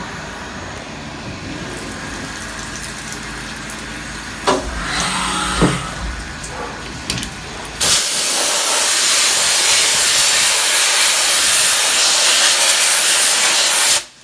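FADAL VMC 4020 CNC vertical mill running with a low steady rumble and two short knocks, then, about eight seconds in, a loud steady hiss starts suddenly as coolant sprays down the table and vises.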